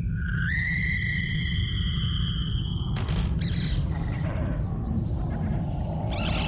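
Electroacoustic music for clarinet and tape: several high sustained tones, one sliding up a little about half a second in and holding for a couple of seconds, over a steady low rumble. A sudden break comes about three seconds in, followed by more high held tones near the end.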